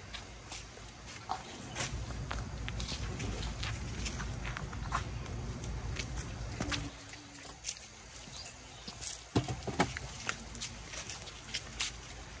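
Footsteps and scattered light clicks and taps of people moving on brick paving, with a low rumble for a few seconds in the first half.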